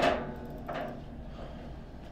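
Hard knocks from a table football table: a loud, sharp knock right at the start with a short ring, then a fainter knock a little under a second in.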